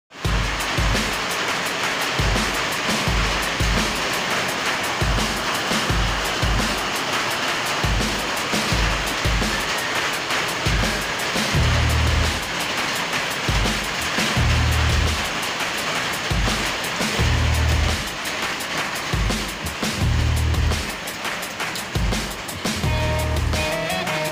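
Background music with a steady bass beat about twice a second, over a constant rushing hiss; melody notes come in near the end.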